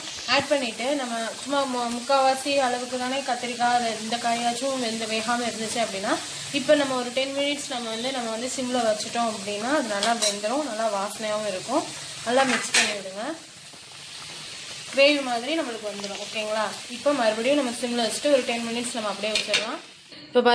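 A ladle stirring thick, simmering dry-fish gravy in an aluminium pot, scraping round the pot in repeated wavering strokes with small knocks, and pausing briefly about two-thirds of the way through.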